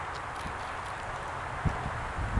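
Steady outdoor background noise with no distinct source, broken by two brief low thumps near the end.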